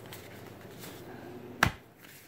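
Soft handling rustle, then one sharp click about one and a half seconds in: the magnetic closure of an earbud carrying pouch snapping shut.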